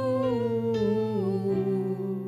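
A man's voice holding a long note in a slow worship song, stepping down in pitch a couple of times, over soft sustained keyboard accompaniment.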